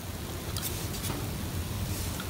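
Steady background noise, a low hum with hiss, with two faint light ticks about half a second and a second in.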